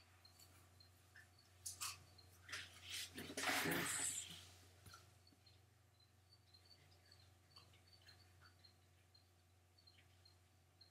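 Graphite pencil working on paper: a few soft, short scratches, then one longer, louder scratching stroke about three seconds in. A steady low hum and faint high chirps run underneath.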